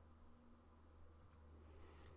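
Near silence: room tone with a low steady hum, and two faint computer mouse clicks a little over a second in.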